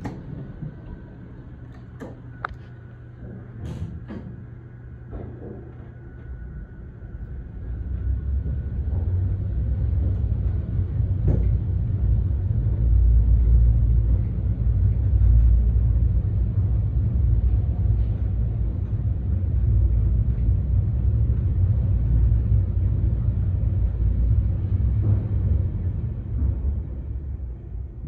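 Kone-modernized Otis high-speed traction elevator (900 ft/min) descending non-stop: a low, steady rumble of cab ride and hoistway air noise builds as the car speeds up and then holds. A few sharp clicks come in the first few seconds.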